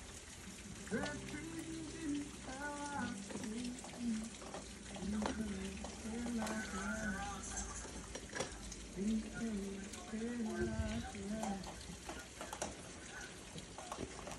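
Rain falling steadily outside an open window, a soft even patter, with a faint voice in the background. A few light clicks come from a casement window's crank handle being turned by hand.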